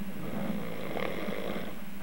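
A sleeping man snoring: one long snoring breath that swells and fades over about a second and a half, over a steady low hum.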